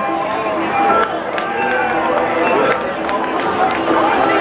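A crowd of parade spectators talking over one another, with music playing in the background.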